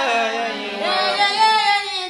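A young woman singing an ebibindwom, a Fante sacred lyric, solo and unaccompanied. She holds notes that bend in pitch, with a short break before a new phrase begins just under a second in.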